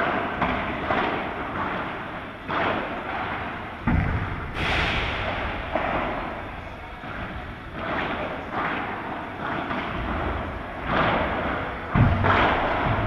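Padel rally: the ball is struck back and forth with solid padel rackets, each hit a sharp pop with a long echo in a large hall, roughly one every second or so, with a louder bang about four and a half seconds in.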